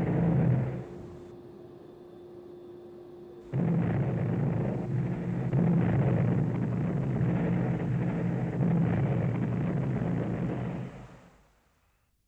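Panavia Tornado's 27 mm Mauser cannon firing: a short burst at the start, then a long continuous burst from about three and a half seconds in that fades out near the end.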